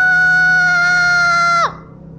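A single long, high-pitched scream held at an almost steady pitch for nearly two seconds, then breaking off with a quick downward drop.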